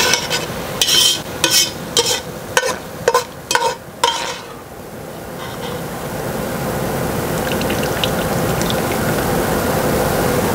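A metal slotted spoon scraping and clinking against a Dutch oven in a quick series of strokes over the first four seconds as browned sausage is scooped out. Then the fat and juices left in the hot pot sizzle, growing steadily louder.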